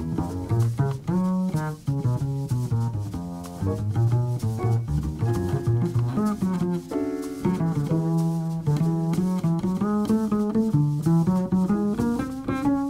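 A jazz piano trio plays a ballad. An acoustic piano plays chords and melody over a plucked upright double bass line, with light drums and cymbals keeping time.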